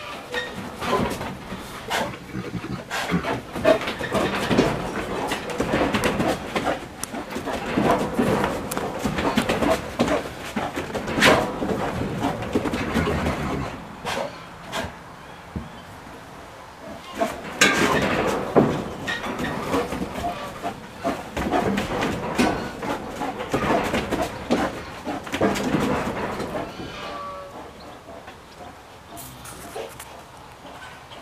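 Brown bear handling a large rubber tractor tire on a wooden plank deck: the tire knocks, scrapes and thumps against the boards in two long bouts, with a few sharp louder knocks, a short lull midway and quieter near the end.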